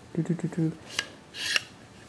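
Metal parts of an RC helicopter's aluminium frame and gear train clicking and rattling as they are worked by hand, with a sharp click about a second in and a short scraping rattle after it.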